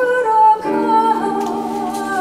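A woman singing a slow melody with vibrato, without clear words, over held piano chords; a new chord comes in a little over half a second in.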